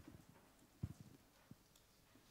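Near-silent room with a few soft, low thumps: one at the start, a quick cluster about a second in, and one more half a second later.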